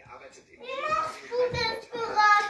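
A person talking, starting about half a second in.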